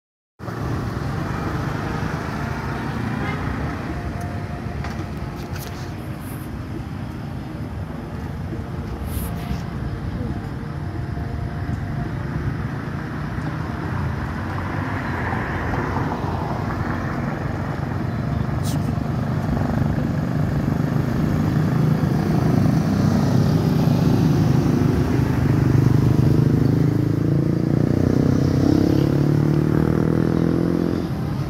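Steady road-traffic noise, with a motor vehicle's engine getting louder over the last several seconds.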